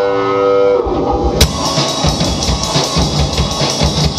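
Live rock band with electric guitar, electric bass and drum kit. Held guitar notes ring at first, then about a second in the drums and full band come in together, a cymbal crash leading into a steady driving beat.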